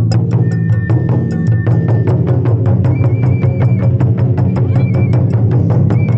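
Taiko drum ensemble playing a fast, even rhythm on large barrel drums, with a high held note sounding over it at times.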